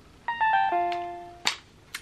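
Philips Avent SCD501 baby monitor's parent unit playing a quick descending electronic chime of about five notes as it is switched off. The notes ring on and fade, and a short click follows about a second and a half in.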